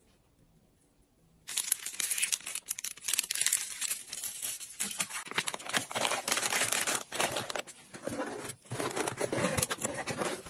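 Paper packaging being handled: rustling and crinkling of shredded paper filler and a cardboard mailer box as gloved hands press the contents down and close the box. It starts suddenly about one and a half seconds in, after a quiet start, and goes on as an irregular string of crackles.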